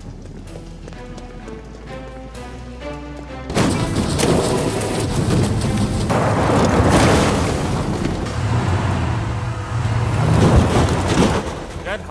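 Dramatic music, then about three and a half seconds in a sudden, long, loud crashing and rumbling of a car tumbling down a slope, which runs on for about eight seconds.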